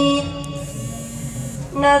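A man singing an Urdu naat into a microphone. A long held note ends just after the start, a short pause follows with the voice ringing on faintly, and the next sung line begins near the end.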